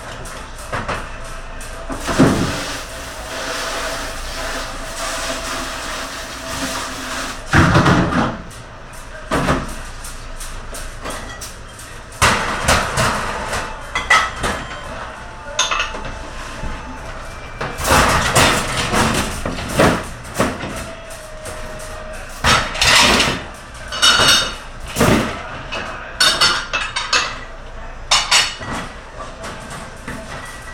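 Commercial kitchen clatter: irregular knocks and clanks of dishes and metal, many in quick runs, over a steady background hiss.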